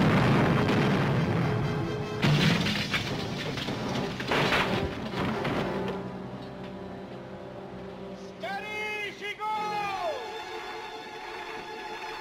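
Orchestral film score under sea-battle sound effects: a loud crash right at the start, then two more noisy crashes about two and four seconds in, and a few long falling cries near the end.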